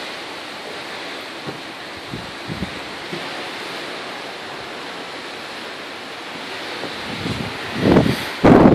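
Steady rush of wind and sea from a moving ship's balcony: the water washing along the hull below, with wind buffeting the phone microphone in a few brief low thumps in the first few seconds.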